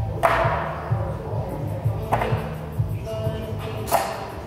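Three sharp metallic clanks, each with a short ring, about two seconds apart, as iron weight plates are handled and knocked together at a plate stack. Background music with a steady beat plays throughout.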